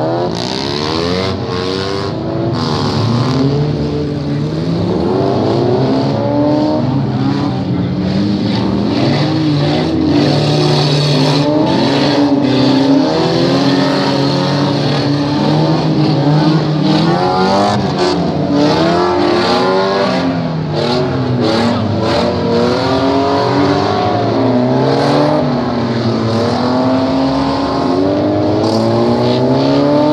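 Several demolition-derby car engines running and revving at once, their pitch rising and falling continuously as the cars accelerate and brake, with sharp knocks now and then.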